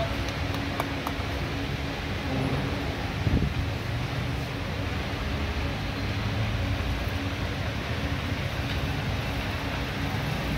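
Steady ambient background noise, a low rumble and hiss with a faint hum, with a brief louder low swell about three seconds in.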